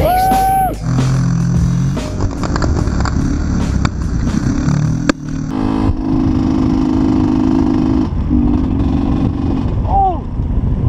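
Dirt-bike engines running through crash footage, with wind and rough noise on the helmet-camera microphone. In the second half a steadier engine note holds for a few seconds, and short high sounds come at the start and near the end.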